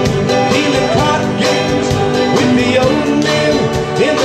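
Live country band playing, with mandolin and a drum kit keeping a steady beat under a gliding lead melody.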